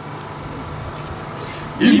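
A pause in a cappella choir singing, holding only a low steady background hum, before the choir comes back in loudly with a sung Swahili line near the end.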